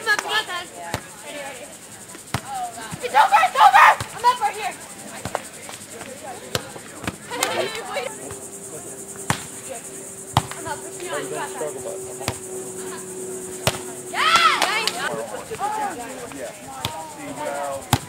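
A beach volleyball being struck again and again in a rally on a sand court, sharp single slaps a second or two apart. Over them runs a steady high insect buzz, and voices call out loudly twice.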